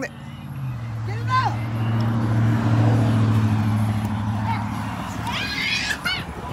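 A passing motor vehicle's low, steady engine hum that swells for a few seconds and then fades.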